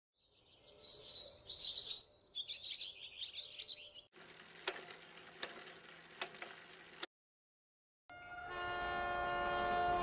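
A string of separate sound clips: bird chirping for about four seconds, then a noisy stretch with a few clicks, a second of silence, and a loud, steady horn-like tone with many overtones near the end.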